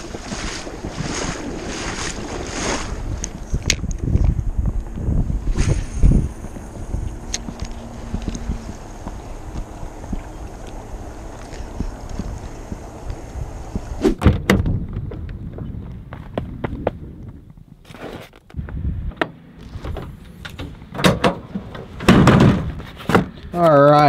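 Wind buffeting an action-camera microphone over lapping lake water, a low rumbling hiss for the first half. About halfway through it turns quieter, with scattered sharp clicks and knocks.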